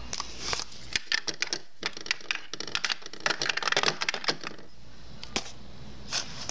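Quick, irregular clicks and taps of hard plastic Play-Doh toy pieces being handled, coming in clusters and thinning out near the end.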